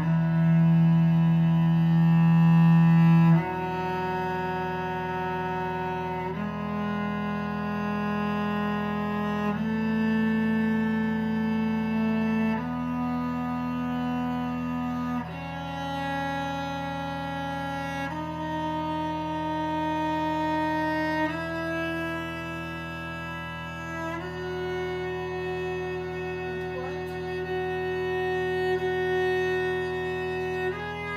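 Cello playing a slow ascending E major scale, one long bowed note about every three seconds, over a steady sustained drone. Each note is held against the drone to check its interval for intonation.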